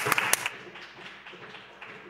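Applause from members in a legislative chamber, hand clapping. It is dense and loud for the first half second, then thins to softer, scattered claps.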